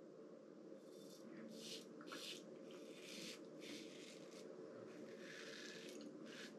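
Faint, scratchy strokes of a Razorock Lupo stainless-steel double-edge safety razor, fitted with a Gillette 7 O'Clock Super Platinum blade, cutting stubble through shaving lather on the first pass. The short strokes come roughly one a second or a little faster.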